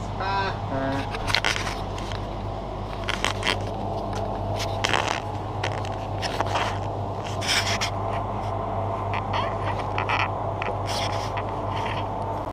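Grocery-store background: a steady low electrical hum with irregular short rustles, clicks and knocks from handling and movement in the aisle.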